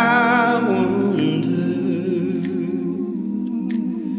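Wordless vocal music: a high sung note with vibrato that fades after about a second, held over a steady low hummed drone, with three soft clicks spaced through it.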